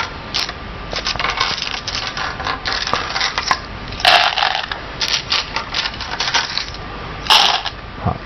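Go stones clicking and clattering as they are gathered off the board and dropped by the handful into the wooden stone bowls. There are two louder rattles of stones landing in a bowl, one about four seconds in and one near the end.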